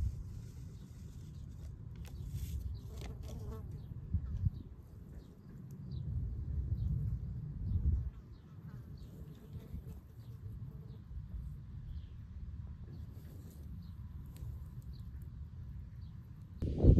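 A flying insect buzzing close by, its sound swelling and fading several times.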